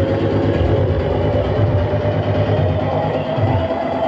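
Trance music played loud over a club sound system, with a heavy bass and a long held synth line.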